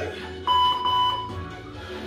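A long electronic timer beep about half a second in, the last of a countdown of beeps, signalling the start of a 45-second exercise interval after the 15-second rest. Background music with a steady bass plays underneath.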